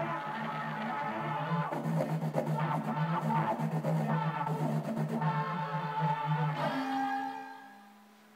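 Camel Audio Alchemy software synthesizer sounding a sustained, plucky note played by hand motion over an AudioCube's infrared sensor. The hand movement morphs its tone and nudges its pitch, and the note shifts about 6.5 s in, then fades out near the end.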